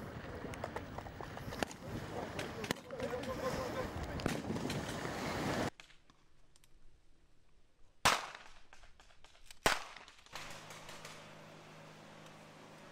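Two sharp rifle shots about a second and a half apart during a tactical training drill, the loudest sounds in the stretch. Before them there is steady outdoor noise with voices, then a sudden drop to quiet.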